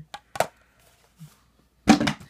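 Empty plastic toiletry bottles being handled and put down: a small click and a sharp knock under half a second in, then a louder knock of plastic on a hard surface near the end.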